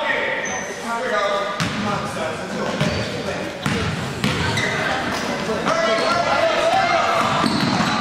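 Voices of players and spectators calling out across a gymnasium, with a basketball bouncing a few times on the hardwood floor.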